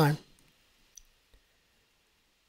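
Faint computer mouse click about a second in, with a softer click shortly after, over otherwise near silence.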